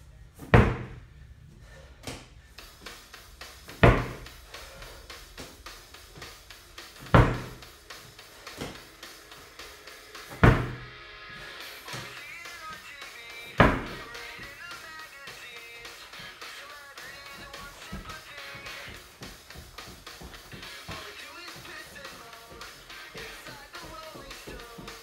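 A slam ball thrown down hard onto a rubber floor mat: five heavy thuds about three seconds apart in the first half, then no more. Background music plays throughout.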